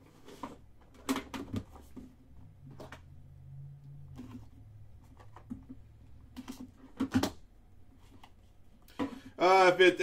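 Faint scattered clicks, knocks and rustles of hands handling trading card packaging: a small cardboard box lifted out of its case and its lid opened. A man starts talking near the end.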